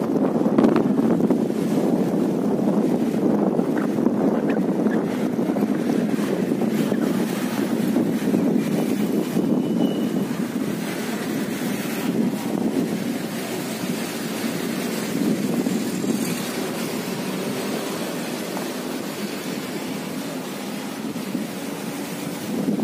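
Wind buffeting the phone's microphone, a steady low rumbling noise that eases off slightly toward the end.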